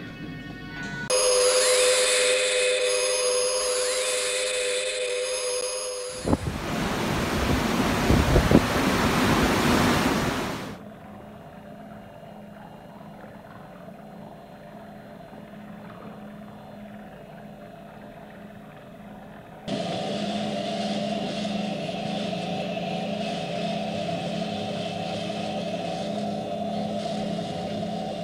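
Science-fiction TV soundtrack: a music sting with gliding electronic tones, then a loud rushing roar that cuts off after about four seconds. It is followed by a quieter low steady hum and, from about twenty seconds in, a louder steady mechanical hum with held tones, the ambience of a submarine control room.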